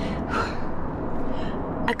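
A short gasp, a sharp intake of breath, about half a second in, over a steady low background noise.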